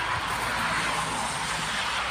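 Konstal 805Na tram cars passing close by, a steady noise of the tram running on the rails.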